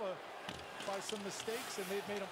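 Play-by-play commentary from a televised hockey game, low in the mix, over arena background noise.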